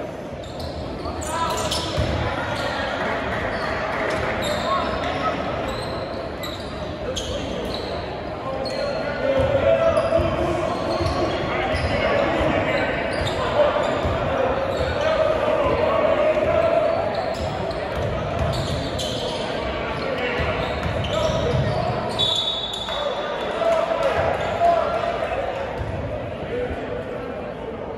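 Basketball bouncing on a hardwood gym floor, with repeated short knocks and sneaker squeaks, over steady crowd and player chatter echoing in a large gym.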